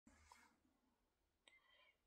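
Near silence: faint room tone, with a small click about one and a half seconds in.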